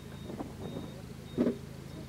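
Engine of a modified off-road 4x4 competition vehicle running at low speed on a dirt track, with a short, much louder burst about one and a half seconds in.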